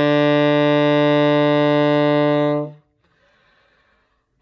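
Alto saxophone holding one long, steady low note in its bottom register, a long-tone exercise for the low notes; the note stops about two-thirds of the way in, leaving a short pause.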